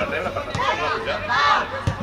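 Indistinct shouting and chatter from voices around a football pitch, loudest about one and a half seconds in, with a short thump near the end.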